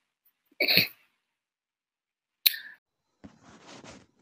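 A short cough-like burst from a person, then a single sharp click about two and a half seconds in.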